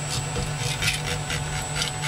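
Metal spatula scraping under a PSU print stuck fast to the glass build plate, a few short rasping scrapes as the firmly bonded part is pried loose.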